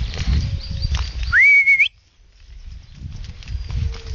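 Footsteps and rustling on a leaf-strewn woodland path. About a second and a half in, one loud, clear whistle of about half a second slides up, holds level, and flicks higher at the end. The footsteps stop briefly after it and then resume.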